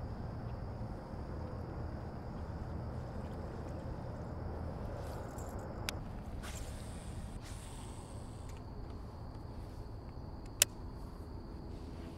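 Quiet outdoor ambience from a kayak on a pond: a low steady rumble and a faint, steady high whine that drops out for a couple of seconds. Two sharp knocks, one about six seconds in and a much louder one near the end.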